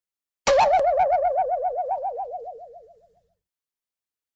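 Cartoon "boing" sound effect: a single twanging tone, struck sharply about half a second in, its pitch wobbling about eight times a second as it fades out over some three seconds.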